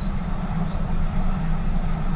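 Tyne & Wear Metro train running along the track, a steady low rumble.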